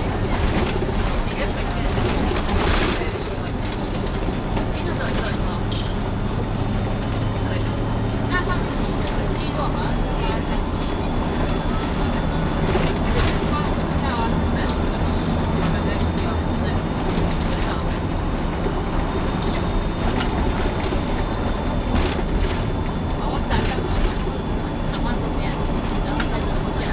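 Cabin sound of an MCI intercity coach under way at speed: a steady low engine drone and road noise, with a few short clicks and rattles now and then.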